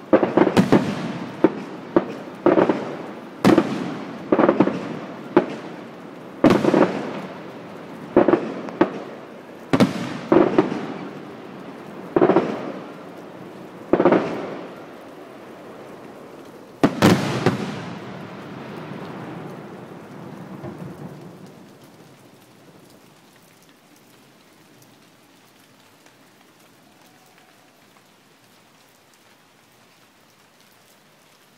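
Aerial firework shells bursting, a sharp bang roughly every second, each followed by a rolling echo. A last big burst comes about seventeen seconds in, and its rumble dies away over the next few seconds, leaving only a faint background.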